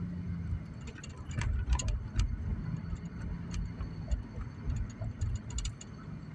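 Car driving, heard from inside the cabin: a low, uneven rumble with a faint steady hum, and scattered light clicks and ticks at irregular intervals.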